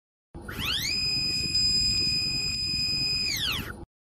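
Logo intro sound effect: a synthetic tone that sweeps up, holds steady for nearly three seconds, then sweeps back down and stops, over a low rumble.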